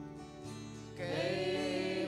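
A worship song played on acoustic guitar and keyboard, with sustained chords. About a second in, a woman starts singing a line in Lai over the band.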